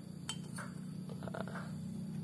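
A few light metallic clinks as the intake valve is fitted back into a Yamaha Mio's lapped cylinder head, over a faint steady low hum.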